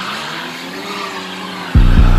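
Hip-hop instrumental break: the bass and drums drop out, leaving a noisy swelling transition effect with faint gliding pitches. The deep bass and drums come back in hard near the end.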